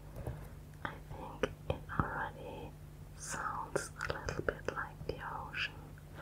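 Long acrylic fingernails tapping on and squeezing a clear, bead-filled squishy ball: a string of sharp, irregular clicks with crinkly rustling between them.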